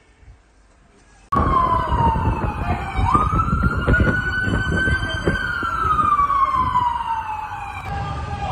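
An emergency vehicle siren in a slow wail, starting suddenly about a second in. Its pitch falls, jumps up, holds high, then slides slowly down again, over a low rumble.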